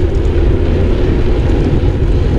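Wind rushing over an action camera's microphone on a moving bicycle: a loud, steady low rumble.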